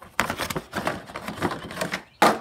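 A new engine air filter being pulled out of its cardboard box: a run of rustling, scraping and small knocks of cardboard against the filter's frame.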